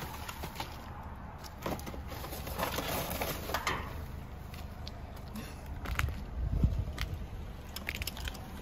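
Rummaging through trash in a dumpster with a reach grabber: scattered clicks and knocks, a rustle of bags and cardboard about three seconds in, and bursts of low rumble around six to seven seconds in.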